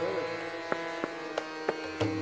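Hindustani classical accompaniment between vocal phrases: a steady drone, most likely the tanpura, with four light tabla strokes about a third of a second apart.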